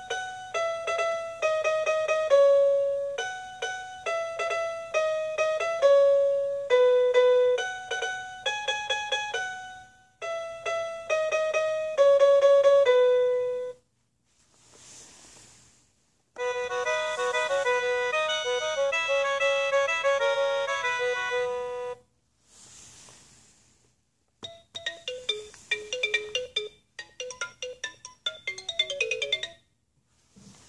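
A toy music player's small speaker plays tinny electronic tunes. First comes a piano-voiced melody of separate notes, which stops about halfway through. A sustained horn-voiced tune follows, then quick short xylophone-like notes near the end, with a short hiss in each gap.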